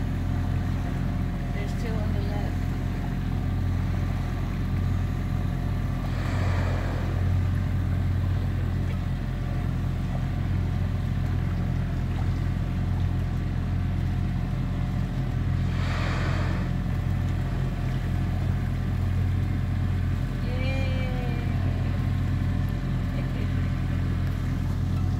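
Boat engine idling with a steady low hum. Twice, about six and sixteen seconds in, a breathy rushing exhalation of about a second rises over it: humpback whales blowing at the surface.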